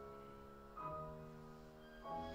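Piano, violin and cello playing a soft, slow classical passage: held chords, with a new chord coming in about a second in.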